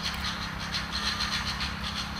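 Outdoor background noise between spoken phrases: a steady low rumble with a faint constant hum, nothing sudden.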